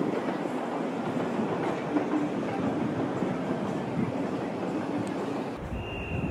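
A train running on the railway tracks below, heard from high above as a steady, even noise with a faint tone in it around the middle.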